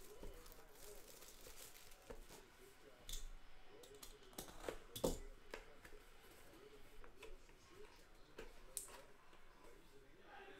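Quiet handling of trading-card packaging: a cardboard box being opened and clear acrylic card pieces handled, with a few light clicks, the sharpest about five seconds in.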